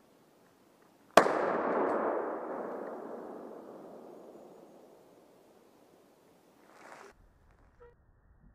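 A single rifle shot about a second in: a sharp crack followed by a long rolling echo through the wooded valley that fades away over about four seconds.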